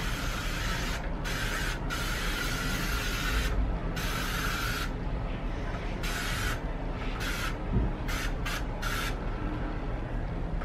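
Aerosol spray sunscreen can hissing in repeated bursts as it is sprayed onto skin: several sprays lasting one to two seconds, then a run of quick short puffs near the end.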